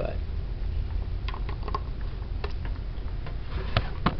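Handling noise: a few scattered light clicks and taps as a SATA cable and hard drive are handled and plugged together, over a steady low hum.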